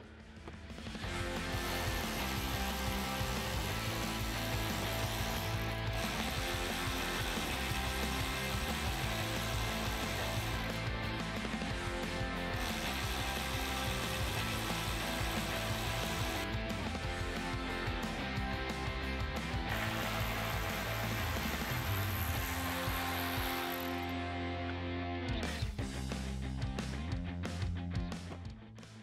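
Background music, with the whirr of a cordless electric ratchet backing out Torx bolts.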